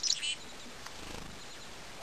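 Black-capped chickadee giving a quick burst of high call notes right at the start, then only a faint steady outdoor hiss.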